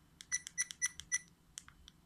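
Rollei Actioncam 425 menu buttons being pressed: four quick button clicks, each with a short high electronic beep from the camera's speaker, about a quarter-second apart. Two more lone clicks follow near the end.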